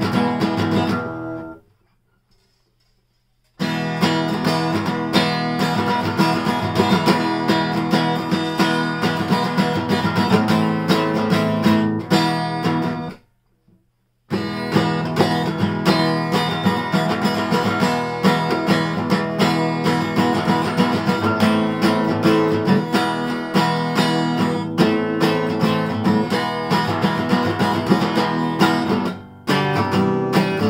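Steel-string Epiphone acoustic guitar strummed hard in steady chords. The sound stops dead twice: for about two seconds soon after the start, and for about a second near the middle.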